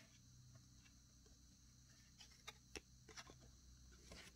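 Near silence, with a few faint ticks and light rustles from trading cards being shuffled and turned in the hands, mostly in the second half.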